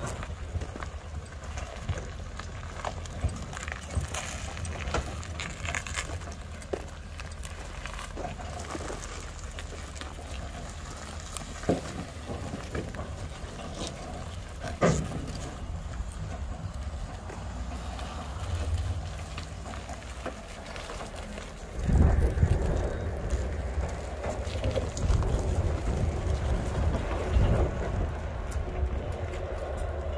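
Low rumble with scattered metal knocks and clanks. About two-thirds of the way through, the rumble grows louder as the 1952 Diamond T wrecker is pulled away on a tow bar, rolling and rattling.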